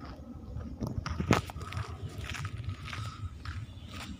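Footsteps and handling noise from a hand-held phone as a person walks, with irregular scrapes and crunches and one sharp click about a second in.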